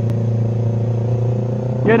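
Yamaha YZF-R3's parallel-twin engine running at a steady, light-throttle cruise, a constant drone without revving. There is one brief click just after the start.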